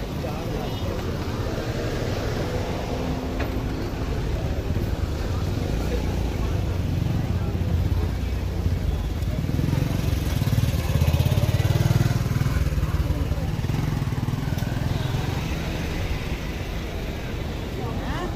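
Busy market street ambience of road traffic and people's voices. A vehicle's engine rumble grows louder about halfway through, passes close near the middle, then fades.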